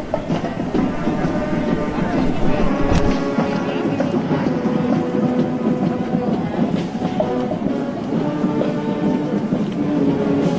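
Marching band music in the street, with steady held notes over outdoor street noise; the low rumble drops out abruptly about three seconds in.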